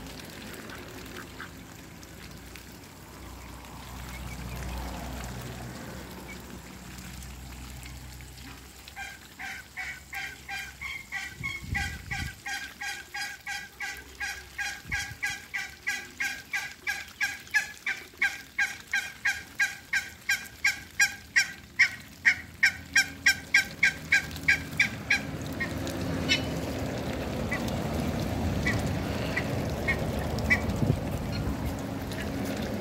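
A goose honking in a long, rapid series of calls, about three a second, starting about a third of the way in, growing louder, then stopping a few seconds before the end.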